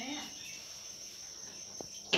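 Faint, steady high-pitched chirring of crickets, with a single soft click near the end.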